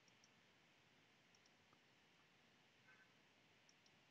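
Near silence, with a few very faint, scattered clicks of a computer mouse.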